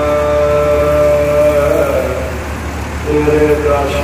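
A man's voice chanting Sikh devotional simran in long, steady held notes. The first note breaks off about two seconds in, and a second held note starts a second later.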